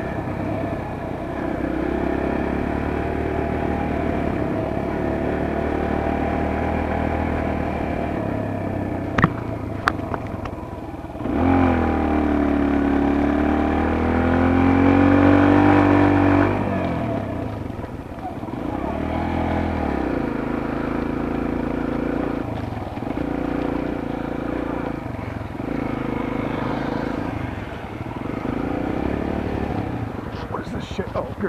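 Kawasaki KLX140G dirt bike's single-cylinder four-stroke engine running under way on a gravel road, its pitch rising and falling with the throttle. About twelve seconds in it gets louder for some five seconds under harder throttle, with a couple of sharp clicks just before.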